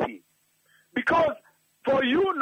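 A man's voice in a radio broadcast: a short spoken phrase about a second in, between brief pauses.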